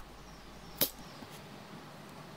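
Scissors cutting through rubber garden hose: one sharp snip a little under a second in.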